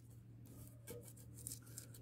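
Near silence: room tone with a steady low hum and a few faint, soft small sounds.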